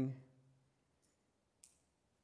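A man's voice fading out at the end of a word, then a pause of near silence broken by a faint click and a brief hiss a second and a half in.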